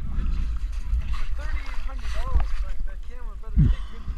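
Steady low rumble of wind buffeting the microphone, under indistinct voices, with a short thump about three and a half seconds in.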